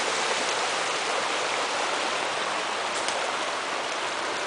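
A small, shallow brook flowing over stones and around logs in riffles: a steady, even splashing hiss of moving water.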